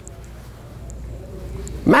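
Steady low room hum during a pause in a man's talk; his voice returns near the end.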